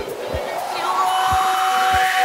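Afro house DJ mix at a breakdown: the bass drops out and a rising noise sweep builds over a few sparse low thumps, with a steady tone coming in about a second in.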